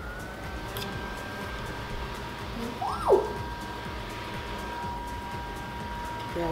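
Small rechargeable desk fan running, with a steady high-pitched motor whine in two tones that steps up slightly in pitch at the start. A single loud swooping tone rises and falls about halfway through.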